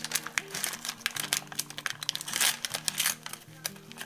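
A popcorn bag crinkling and rustling in a rapid run of crackles as hands work at opening it, over soft background music of held notes.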